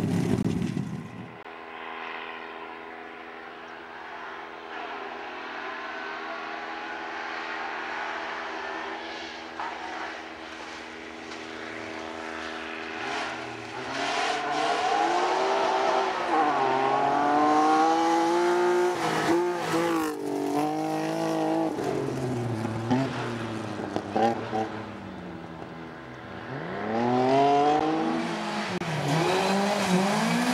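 Rally car engines revving hard, rising and falling in pitch with gear changes as the cars approach and pass, one after another. The first car fades away within the opening seconds, leaving a quieter, steadier engine note. Hard revving returns from about halfway and again near the end.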